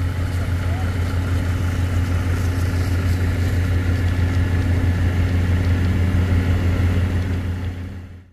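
An engine idling: a steady low hum with faint high tones above it, fading out near the end.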